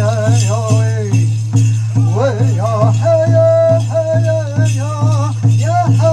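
Powwow dance song for a traditional Warriors dance: a steady drum beat of about two strokes a second under high, wavering chanted singing, with bells jingling.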